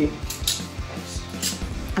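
Clothes hangers clinking and scraping against a garment rail as clothes are handled, with a couple of sharp clinks about a second apart. Music plays underneath.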